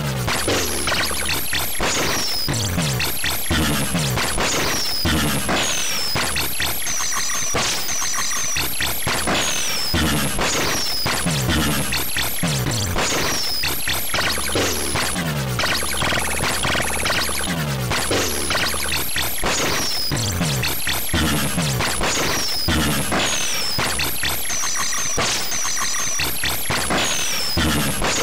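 Harsh one-bit electronic music from a 16-byte MS-DOS program toggling the PC speaker, emulated in DOSBox. A gritty, crackling buzz with falling pitch sweeps, a 'wub', recurring about every second or so.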